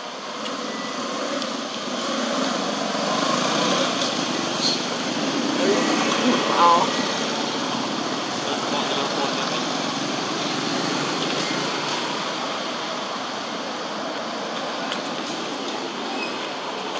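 Road traffic going by: a steady rushing noise that swells over a few seconds and slowly eases, with a few short, faint pitched calls or voices in the middle.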